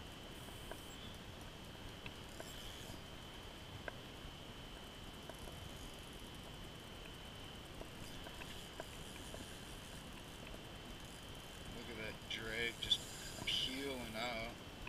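Quiet background with a faint, steady high-pitched whine and a few scattered faint ticks. A man's voice sounds briefly near the end.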